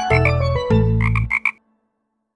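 Children's song accompaniment with a bass line, topped about a second in by four quick cartoon frog croaks, before the music cuts off abruptly.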